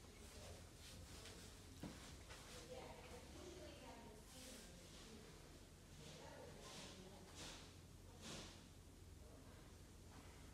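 Near silence: a Hunter Oakhurst ceiling fan running quietly on medium speed, heard only as a faint steady low hum. There is one faint click about two seconds in and a few soft whooshes in the second half.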